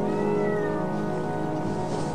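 Music of steady held tones, over which a cat meows once, a single call rising then falling in pitch in the first second.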